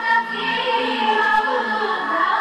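A small group of women singing together to harmonium accompaniment, the harmonium's held reed notes sounding steadily beneath the voices.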